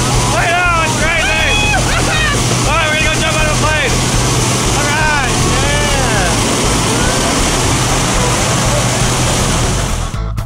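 Loud, steady drone of a jump plane's engine and propeller heard inside the cabin, with a constant low hum under a wide rush of noise. People shout and whoop over it through the first seven seconds or so.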